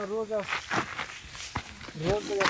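Footsteps on dry, rocky forest ground, a handful of separate steps, after a short drawn-out voice sound in the first half second.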